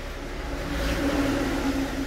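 A motor vehicle engine running steadily, growing louder around the middle and then easing off.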